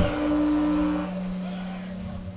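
Amplified instruments left droning after a black metal song has ended. One steady note stops about a second in, overlapped from about half a second in by a lower steady note that keeps ringing.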